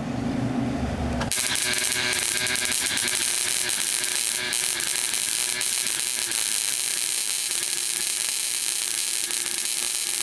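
High-voltage spark from a relay-driven automotive ignition coil, crackling continuously across a gap between brass acorn-nut electrodes. It comes on suddenly about a second in and holds steady, with a faint buzz from the relay under it.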